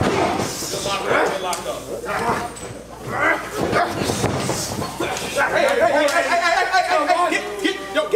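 Indistinct shouts and yells from wrestlers and a small crowd, with a few sharp smacks of strikes landing.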